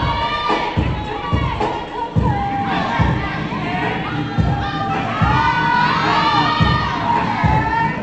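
Audience cheering and shouting, many voices at once, over dance music with a steady low beat.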